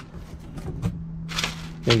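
Plastic wrap and a paper card rustling and crinkling as a hand handles them on a boxed subwoofer enclosure, with a louder crinkle about a second and a half in.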